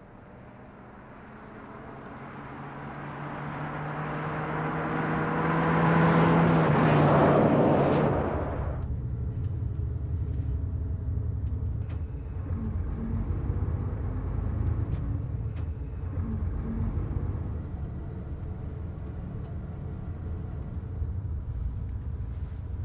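A King Long coach bus approaching and passing close: its engine tone and tyre noise grow steadily louder for about seven seconds, then cut off abruptly. A steady low rumble of the bus heard from inside its cabin follows.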